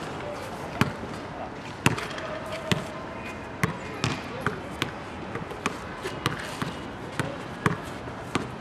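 Basketball dribbled on a hard outdoor court: sharp single bounces about one a second, coming quicker toward the end.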